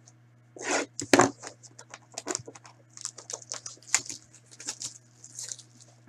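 A box of hockey cards being handled and its plastic wrapping torn open, with many short crinkles and rustles. Two louder knocks of handling come about a second in.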